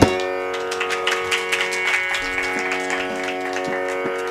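Tanpura drone ringing steadily on its held pitches, with light quick taps that thin out over the first two seconds and a few soft low strokes later.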